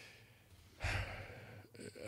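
A man's audible breath into a close microphone about a second in, a short rush of air that fades away, in a pause in his speech.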